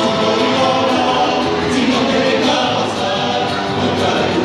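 Chilean folk song with several voices singing together and music accompanying, playing continuously for the dance.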